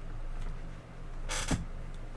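A steady low hum, with a brief rustling noise ending in a low thump about a second and a half in.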